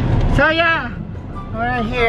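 A person's voice making two drawn-out calls, each rising then falling in pitch, over the steady low rumble of a car interior on the move.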